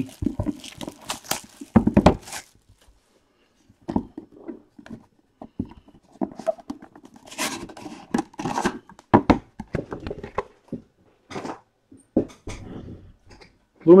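Cardboard packaging of a trading-card box being handled, with scattered rustles, scrapes and taps as the cut outer sleeve comes off and the box is opened. The rustling is densest about halfway through.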